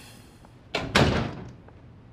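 A door being shut: two quick knocks about a fifth of a second apart, the second the louder, ringing on briefly.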